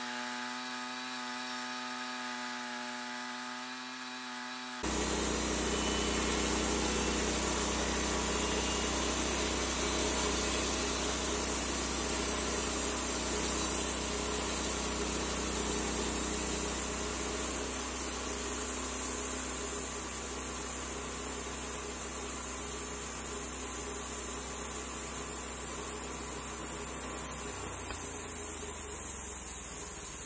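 Small gasoline engine on a homemade bandsaw mill running with a steady hum, then about five seconds in, a sudden much louder, steady sawing as the band blade cuts through a 36-inch live oak log. Near the end the sound drops off as the cut finishes.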